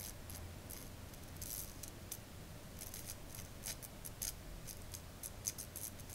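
Small electrical sparks from a mini Tesla coil arcing to a metal rod held at its top terminal: faint, irregular crackling ticks over a faint low hum.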